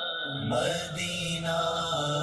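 A man's voice chanting a devotional Urdu kalam in long held notes, with no instruments. A steady low hummed drone comes in under the voice about half a second in.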